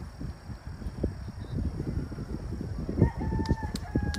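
A rooster crowing about three seconds in, one long held call that breaks briefly and carries on, over a low irregular rumble on the microphone.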